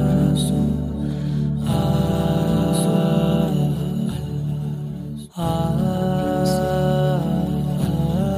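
Wordless vocal background track: a voice holding long, gliding 'ah' notes over a steady low hummed drone, with a brief break about five seconds in.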